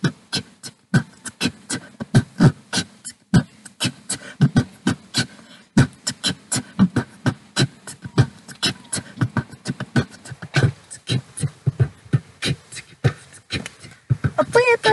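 A person beatboxing into a handheld microphone cupped at the mouth: a fast, continuous run of vocal kick thumps, snare-like clicks and hisses, several strokes a second, laying down a beat.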